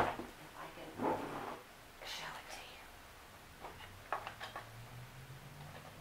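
A sharp knock, then rustling and a few light clicks and knocks as an empty Seth Thomas Adamantine mantel clock case, its clock works removed, is lifted and handled, with a soft whispered voice underneath.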